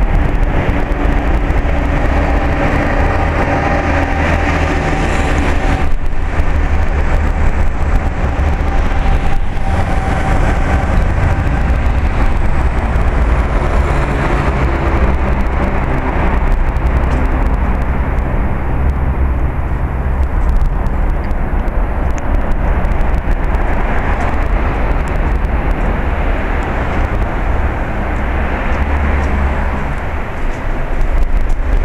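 Dense road traffic on a suspension bridge deck heard from the adjoining walkway: a steady, loud rumble of passing vehicles.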